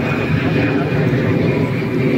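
Steady low rumbling background noise with faint voices underneath.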